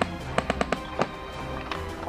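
Background music with a quick run of about seven sharp cracks of airsoft gunfire, irregularly spaced, bunched in the first second.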